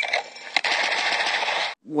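Rapid string of pistol shots fired in very quick succession, one crack running into the next. It cuts off suddenly near the end.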